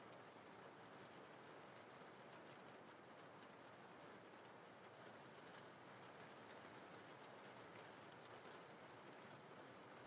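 Faint, steady rain: a soft, even hiss with no other events.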